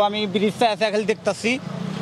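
A motor vehicle's engine running in street traffic, a steady low hum that stands out once the man's speech stops about a second and a half in.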